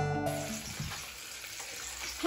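Background music fading out in the first half second, then a faint steady hiss of fish frying in a pan.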